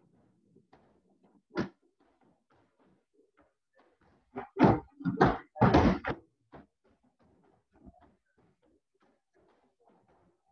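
Kicks and punches landing on free-standing heavy punching bags: one solid thud early on, then a quick run of loud hits around the middle, with lighter strikes between.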